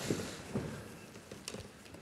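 Faint rustling and a few light, sharp taps as a macaw is set down on a stage floor.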